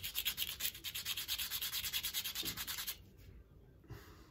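A small tulsi-wood bead rubbed by hand against a piece of sandpaper to smooth its sharp corners: quick, even back-and-forth scratchy strokes, about eight a second, that stop about three seconds in.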